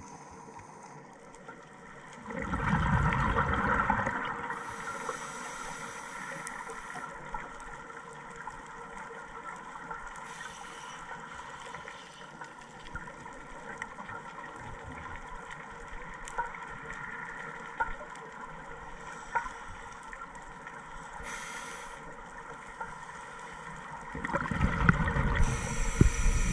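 Scuba regulator breathing heard underwater: a loud bubbling exhalation about two seconds in and again near the end, with short hissing inhalations in between, over a steady underwater hum.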